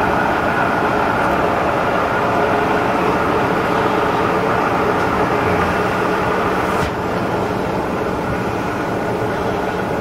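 Sharp VH3 milling machine running with its main motor on and its table power feed engaged: a steady mechanical hum with several held tones. A click about seven seconds in, after which it runs slightly quieter.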